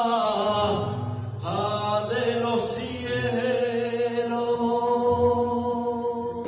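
A young man singing a saeta, the solo unaccompanied Holy Week devotional song, through a microphone and PA. He holds long notes that bend and waver, with a brief breath about a second and a half in before a long sustained phrase.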